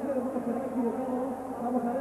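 A steady buzzing drone with a slowly wavering pitch.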